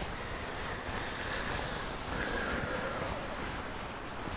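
A fabric blanket rustling and rubbing close to the microphone, as when someone towels off with it: a soft, continuous swishing with gentle swells.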